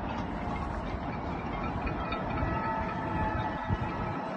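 Steady low rumble of city ambience, distant traffic noise heard from high above the streets, with a brief thump near the end.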